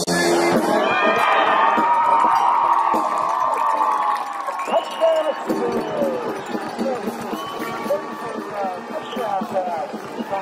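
Stadium crowd cheering and shouting as a ball carrier breaks a long play toward the end zone, loudest over the first few seconds and then dying down into scattered shouts.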